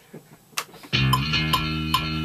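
Warwick electric bass guitar played through an amp. After a quiet first second with a faint click, a note is plucked again and again, about two or three times a second, each one ringing on into the next.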